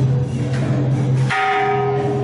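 A bell struck once about a second in, its tone ringing on over a steady low drone.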